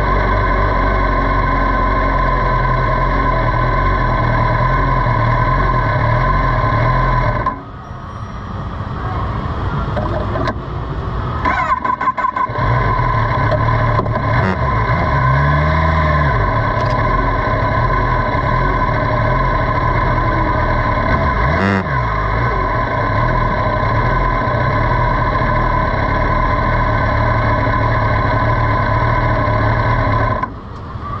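Sport motorcycle engine running steadily at low speed. It drops off abruptly about seven and a half seconds in and again briefly around twelve seconds, then settles back to the same steady note.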